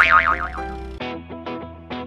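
A cartoon "boing" sound effect: a wobbling tone at the start that dies away within about half a second, followed from about a second in by light background music of short plucked notes.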